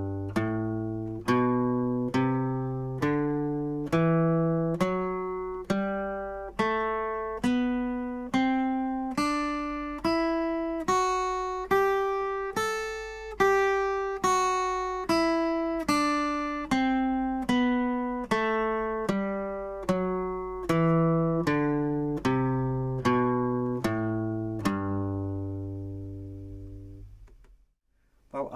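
Steel-string acoustic guitar playing the G major scale, pattern 1, slowly as single picked notes: two octaves up from the low G on the sixth string and back down, a little over one note a second. It ends on the low G root, left ringing until it fades out.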